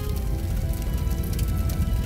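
Background music of sustained, held notes over a steady noisy crackle and low rumble.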